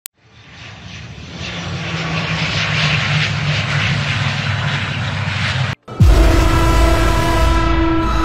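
Turboprop airliner engines running as the aircraft taxis, growing louder over the first few seconds. The engine sound cuts off suddenly about six seconds in and gives way to music that opens with a deep low hit and held tones.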